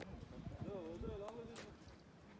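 Faint voices of people talking, mixed with irregular low thumps and a couple of sharp clicks in the second half.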